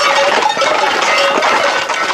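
Hooves of a tight group of Camargue horses clattering on a paved road, many quick overlapping clicks.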